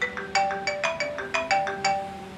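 Phone alarm ringtone playing a fast run of bright, bell-like notes, about six a second, going off to wake someone up.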